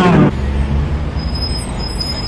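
A woman's voice breaks off, followed by a steady low rumble with a faint high whine that slowly fades.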